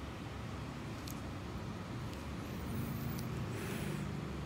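Steady low background rumble with a few faint clicks, one about a second in and another near the end.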